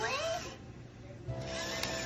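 Droid Depot astromech toy droid making warbling electronic beeps and whistles. After a short pause it gives a steady electronic hum from a little past halfway.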